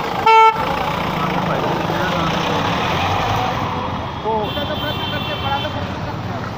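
A vehicle horn gives one short, loud toot about a third of a second in, over steady traffic and engine noise on the street.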